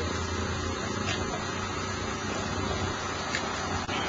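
Homemade gas-turbine jet engine running steadily: an even rushing hiss of air and exhaust over a low hum.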